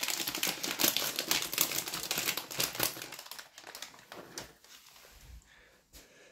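Rapid crinkling and crackling of a treat packet being handled as a long dog chew is taken out. It is dense for about three and a half seconds, then thins to a few scattered crackles.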